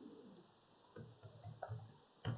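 Faint computer-keyboard typing: a quick run of about five keystrokes in the second second, as a number is keyed into a spreadsheet cell.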